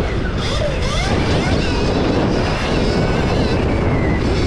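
Stark Varg electric motocross bike's motor whining as it is ridden on a dirt track, its pitch gliding up and down with the throttle, over steady wind noise on the microphone.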